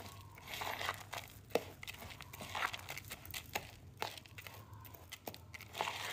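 Spoon stirring and scraping moist flattened green rice (cốm dẹp) in a plastic bowl, with irregular clicks against the bowl and the crinkle of a plastic glove.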